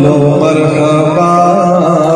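A man's voice reciting a naat (devotional Urdu song) into a microphone, holding long drawn-out notes with slow melodic turns.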